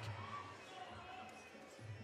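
Faint fight-hall ambience: distant voices and a few low, muffled thuds.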